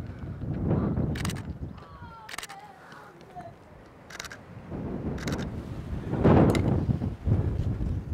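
Wind rumbling on the microphone, stronger in the second half, with about five sharp camera shutter clicks spaced roughly a second apart.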